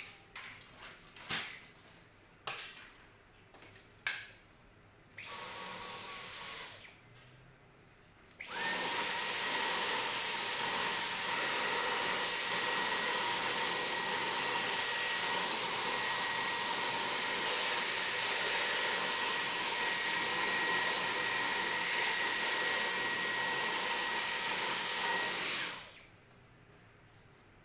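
Dyson cordless stick vacuum cleaner being used to dust out the inside of an open desktop PC case. After a few handling clicks and knocks and a short run of about a second and a half, its motor starts about eight seconds in and runs steadily with a high whine, then cuts off suddenly just before the end.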